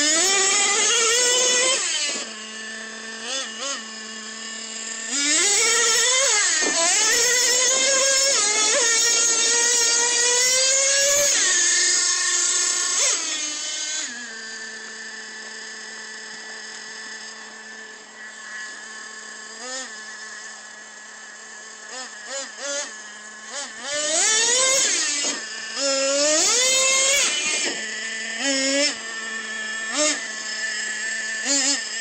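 Radio-controlled monster truck's motor revving up and down in repeated bursts, its pitch sweeping up and falling back. A quieter stretch in the middle holds one steady pitch. The revving returns near the end.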